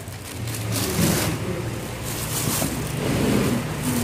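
Plastic bags crinkling in short bursts as fruit peels are handled and weighed on a kitchen scale, over a steady low hum.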